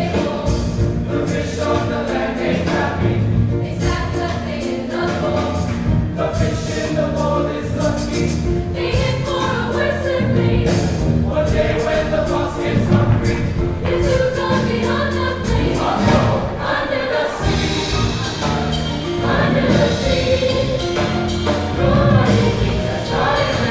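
Large mixed high school choir singing a Disney show tune together over instrumental accompaniment, continuously and at full voice.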